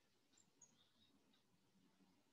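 Near silence: room tone, with a few faint, brief high-pitched chirps about half a second to a second in.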